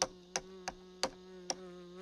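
Cartoon housefly buzzing steadily while it hops across a checkerboard, with a sharp click about every third of a second (five in all) as it jumps the checker pieces.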